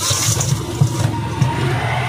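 A motor vehicle engine running: a steady low rumble with a hiss over it.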